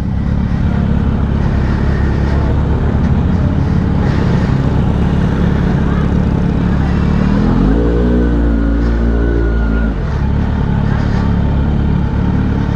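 Kawasaki Z900 inline-four running through an aftermarket underbelly exhaust, idling steadily. About 7.5 s in the revs rise, hold for about two seconds, and drop back about 10 s in.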